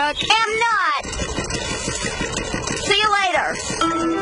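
Wordless voice sounds with sliding pitch, one in the first second and another about three seconds in, with a rattling noise between them.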